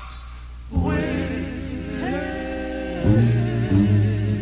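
Male vocal group singing held chords in close harmony, after a brief lull at the start. Lower, stronger notes come in about three seconds in.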